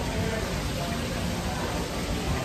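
Faint background music under a steady hiss of room noise.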